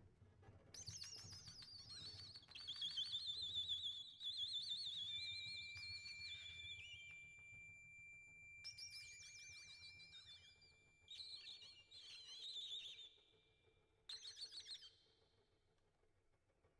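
Free-improvised music from a piano, trumpet and accordion trio: high, fast-warbling whistle-like tones gliding downward in several separate phrases. A steady high held tone sounds under them through the middle of the passage.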